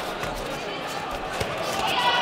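A few dull thuds of kicks and punches landing on padded gloves and gear, with feet on the mat. Voices of coaches and spectators echo in a large hall behind them.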